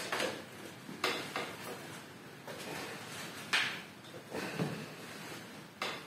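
Scattered short metallic clicks and scrapes as a branch-bending jack and doubled wire are handled and fitted by hand; the sharpest click comes about three and a half seconds in.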